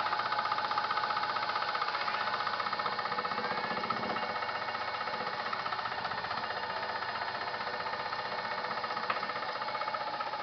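Homemade scroll saw running steadily, its reciprocating blade making a fast, even chatter.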